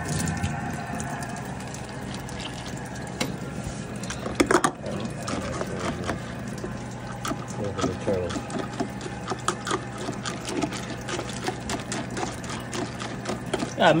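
Water poured from a plastic scoop into a stainless steel bowl of dry dog kibble and stirred in, with a turtle tank's filter running steadily in the background.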